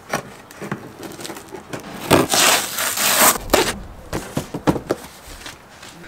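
A blade slitting the packing tape on a cardboard box, with a loud rough tearing scrape about two seconds in that lasts about a second. Sharp clicks and scuffs of cardboard follow as the flaps are worked open.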